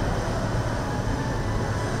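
Steady rumbling background noise of an underground parking garage, with a low hum underneath.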